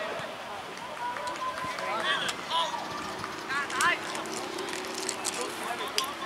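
Distant voices of players and sideline onlookers: scattered shouted calls and chatter, with a few short high-pitched calls in the middle.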